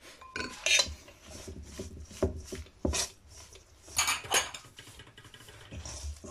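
Metal cutlery clinking and scraping against a stainless steel mixing bowl while crumbly pastry dough is worked after cold water is added. The sharp clinks come irregularly, several in a few seconds.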